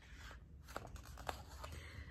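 Faint rustle and a few light clicks of a picture book's page being turned.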